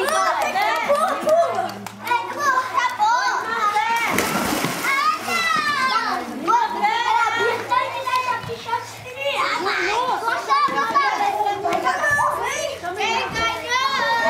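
A group of children shouting, calling and chattering as they play in a swimming pool, with some water splashing and a noisy burst about four seconds in.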